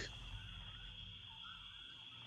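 Quiet background hiss of a voice-call recording, with a faint steady high-pitched whine and a few faint chirps in the middle.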